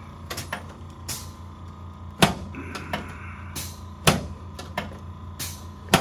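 Chiropractic thrusts on the upper back of a patient lying face down on a padded adjustment table: a series of sharp clicks and knocks, the loudest about two seconds in, about four seconds in and just before the end.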